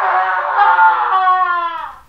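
A single horn-like blast, about two seconds long, whose pitch sags slowly downward before it fades out.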